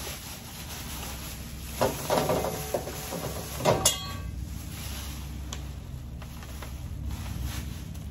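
Plastic shopping bags rustling and crinkling as decorations are pulled out of them, loudest about two seconds in and again near four seconds. A truck's engine runs steadily underneath.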